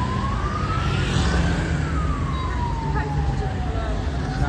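A siren's slow wail: one long rise in pitch, then a long fall that bottoms out near the end and starts to rise again, over the low rumble of street traffic.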